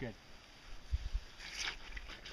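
Bare hands smoothing a wet cement coat on the dome of a concrete water tank. There are a couple of low thumps about a second in, then a soft wet swishing in the second half.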